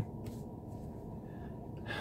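Quiet, steady low rumble inside a car cabin, with a man drawing a quick breath in near the end.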